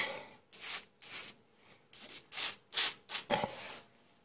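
A series of short, uneven rubbing or hissing noises, about eight in four seconds, close to the microphone during hand work in a car's wheel arch.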